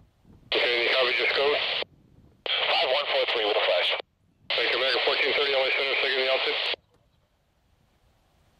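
Air-traffic-control radio chatter over a radio receiver: three short, thin-sounding voice transmissions, each cutting in and out abruptly, followed by faint hiss.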